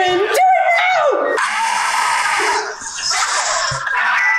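Loud yelling and shrieking voices: a drawn-out high-pitched yell in the first second, then screams.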